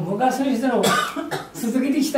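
A man talking in an ordinary speaking voice, with a short cough about a second in.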